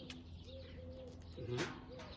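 Soft, drawn-out cooing of a dove, repeating in the background, with a short smacking sound, a kiss, about a second and a half in.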